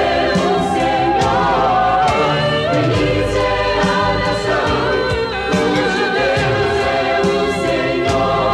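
A woman singing a Portuguese gospel song into a microphone, her sustained notes wavering with vibrato, over a continuous instrumental backing with a steady beat.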